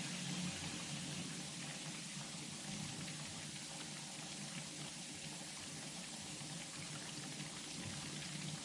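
Faint steady hiss of recording background noise, with no distinct events.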